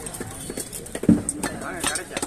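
A heavy thud on a wooden chopping block about halfway through, as a whole seer fish is set down on end on the block, among scattered sharp knocks.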